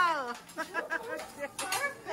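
A drawn-out vocal call slides down in pitch and fades away right at the start, followed by quieter voices talking.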